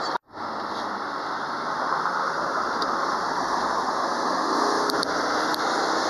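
Steady road and engine noise of a car driving, heard inside the cabin: an even rumble and hiss. The sound cuts out completely for a moment just after the start, then resumes.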